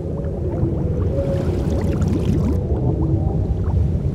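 Underwater sound effect: a steady deep rumble with many small bubbles gurgling up, each a short rising blip.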